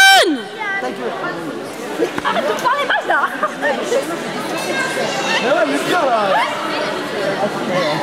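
Indistinct chatter and calls of spectators echoing in a large sports hall, opening with a loud shout.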